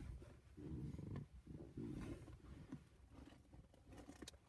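Near silence: room tone, with a few faint, short low sounds about one and two seconds in.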